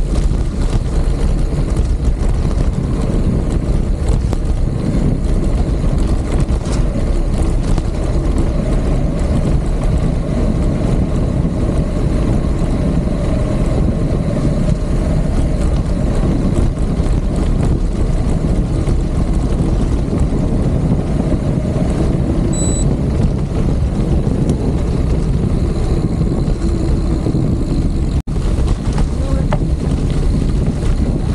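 Steady wind rumble on the camera microphone while a mountain bike rolls downhill on a dirt road, mixed with tyre noise on the gravel surface.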